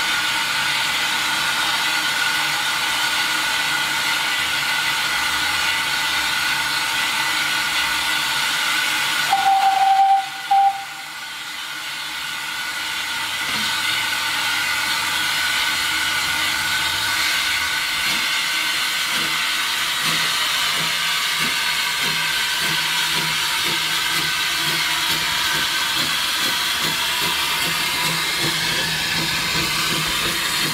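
Steam hissing steadily from the GWR Avonside 0-4-0 saddle tank no.1340 Trojan. About nine seconds in its steam whistle sounds, one longer blast and a short second toot. In the second half faint regular exhaust beats join the hiss as the engine gets under way.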